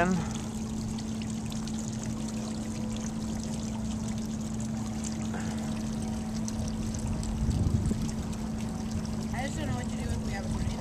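Water splashing steadily in a tiered stone fountain, with a steady low hum under it. A brief low rumble comes about eight seconds in.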